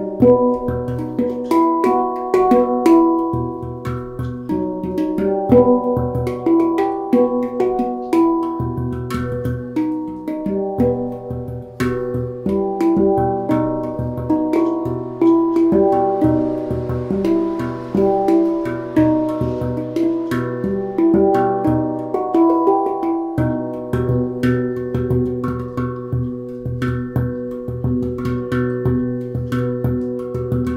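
Handpan played with the hands in a free improvisation: a continuous stream of struck, ringing steel notes, with a deep low note sounding again and again beneath the higher tones.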